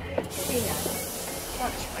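Diesel multiple unit train standing at the platform with a sudden sharp air hiss from its brakes starting about a third of a second in and continuing, over the low drone of its engine.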